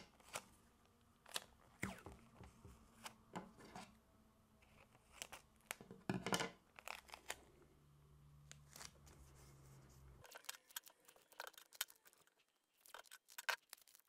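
Clear packing tape pulled off the roll and torn into strips, in faint scattered short rips and crackles, with small taps as it is pressed down around a balloon neck on a board.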